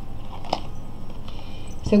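A tarot card being handled and laid down on a cloth-covered table, with one sharp soft tap about half a second in. A steady low hum runs underneath.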